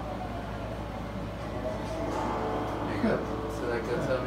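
Indistinct voice and music over a steady low hum.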